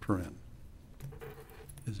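A man's voice trails off, then a pause in a quiet meeting chamber. About a second in there is a single small click, followed by faint handling noise until the voice starts again near the end.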